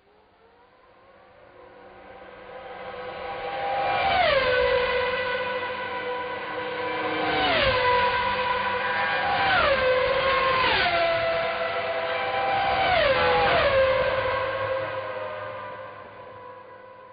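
Formula One cars passing at high speed one after another, each high-pitched engine note dropping sharply in pitch as it goes by, about five times. The sound fades in at the start and fades out near the end.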